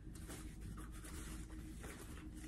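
Faint rustling and rubbing of a small fabric doll bag being handled and turned over in the hands.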